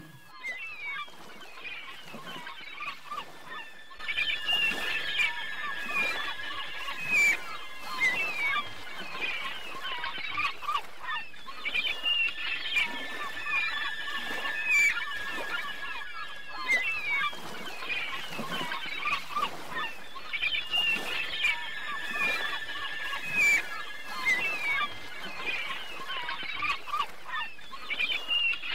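Birds calling over and over in many short calls, with the same stretch of calls seeming to come round again about every eight seconds, like a looped ambience track.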